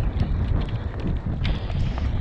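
Mountain bike riding fast down a leaf-covered dirt singletrack: wind buffeting the camera microphone, with the tyres rolling over the dirt and scattered clicks and rattles from the bike.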